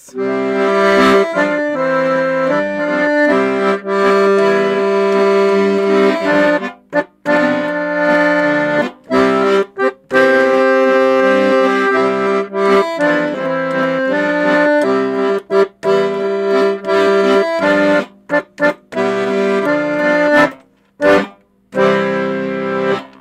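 Petosa piano accordion playing a right-hand melody in parallel sixths over a left-hand bass-and-chord accompaniment. The phrases are broken by several short gaps, and the playing stops shortly before the end.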